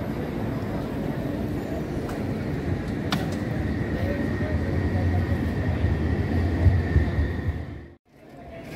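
City street sound: a steady rumble of traffic mixed with the voices of passers-by. The low rumble swells in the second half, as of a vehicle passing close, and a faint steady high whine runs through the middle.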